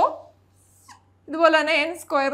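A woman's voice speaking: a syllable trailing off at the start, then a pause, then a drawn-out phrase in the second half.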